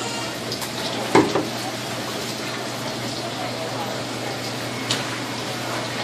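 Steady running-water noise with a low hum beneath it, broken by a short loud knock about a second in and a smaller one near the end.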